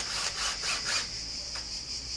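Cordless drill driving a conduit clip's steel nail into hard plaster: a short run of rough grinding pulses, about four a second, that stops about a second in. Cicadas or crickets keep up a steady high buzz behind it.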